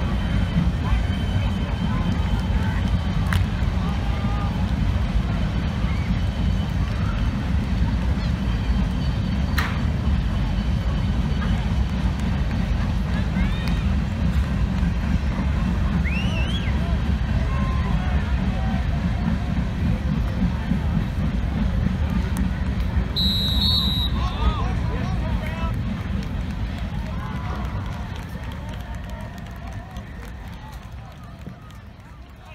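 Freight train cars rolling slowly past, a steady low rumble that fades away over the last few seconds, under the chatter of a crowd. A brief high whistle sounds about three-quarters of the way through.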